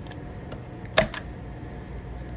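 Bottoms Up bottom-fill draft beer dispenser pouring beer up into a cup through its base, a faint steady fill sound. One sharp click about a second in.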